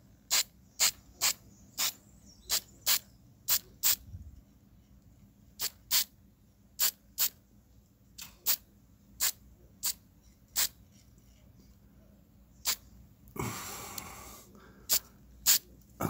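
Aerosol spray-paint can fired in about twenty short hissing bursts, irregularly spaced, with one longer spray of about a second near the end.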